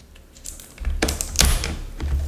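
Two sharp plastic clicks with low handling knocks, about a second and a second and a half in, as a laptop's internal battery is lifted up off its motherboard plug.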